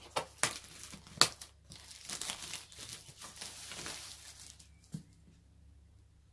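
Plastic shrink-wrap film being torn and pulled off a cardboard box, crackling and crinkling, with one sharp crackle about a second in. The crinkling dies away after about four and a half seconds, with a single click near the end.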